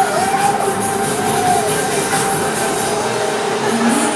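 Loud fairground music playing over the steady rumble of the Shake & Roll ride running, its gondolas swinging and spinning.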